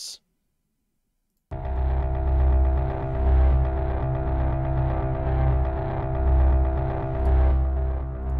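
Three layered instances of Sample Logic's Arpology Cinematic Dimensions playing a synthesized cinematic arpeggio pattern over a pulsing low bass, starting about a second and a half in.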